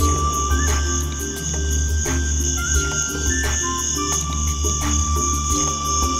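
Background music with long held notes and a short repeating figure, over a steady high-pitched chorus of crickets.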